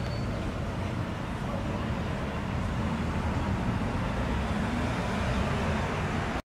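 Steady street traffic noise, a continuous low rumble with no distinct events.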